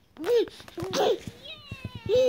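A baby's voice: two short, high-pitched rising-and-falling squeals, followed near the end by a few thin falling whistling tones.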